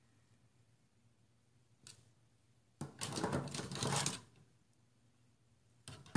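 Plastic-handled craft scissors clattering against a wire scissor caddy as they are handled. One click comes about two seconds in, then about a second and a half of rattling, with faint room tone either side.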